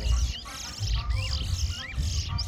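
Caged chestnut-bellied seed finches (towa-towa) singing quick whistled phrases that glide up and down, over a low rumble.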